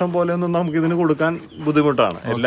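A man speaking, with short pauses between phrases.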